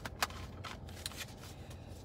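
A deck of oracle cards being handled and shuffled by hand: a few crisp card snaps and clicks, the sharpest about a quarter second in.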